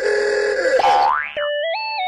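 Comic cartoon sound effects: a held twangy tone, then a quick rising slide-whistle-like glide about a second in, followed by a short run of steady electronic tones that step upward in pitch.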